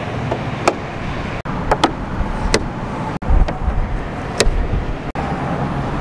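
Steady outdoor background noise with a few sharp clicks and a couple of low thuds as hands handle a vehicle's hood edge.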